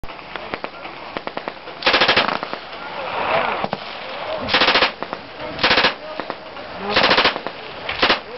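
Thompson submachine gun firing four short full-auto bursts, each a rapid string of shots lasting about half a second, spaced one to two and a half seconds apart, with another burst starting at the very end. Scattered single sharp cracks come in the first second and a half, before the first burst.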